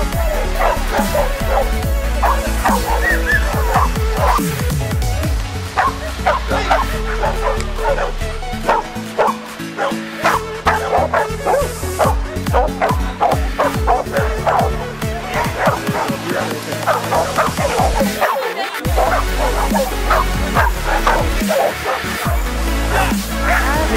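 A dog barking over and over in quick succession, with background music playing throughout.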